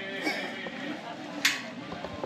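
Busy pedestrian street: passers-by's voices in the background, with one sharp click about one and a half seconds in.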